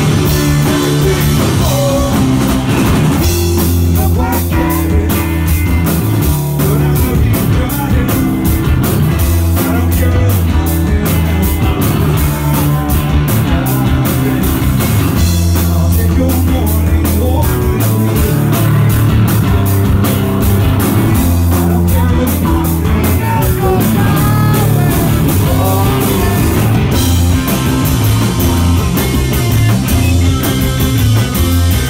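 Indie rock band playing live and loud: electric guitar, bass guitar and a full drum kit together in a steady rock groove.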